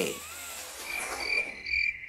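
Cricket-chirp sound effect: short, even, high-pitched chirps about three a second, starting about a second in, the comic 'crickets' cue for an awkward silence.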